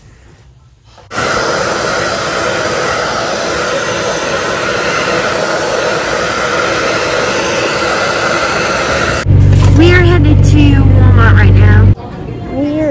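Handheld hair dryer switching on about a second in and running steadily while drying a small dog after its bath. It cuts off suddenly near the end, giving way to a loud low hum with a voice over it.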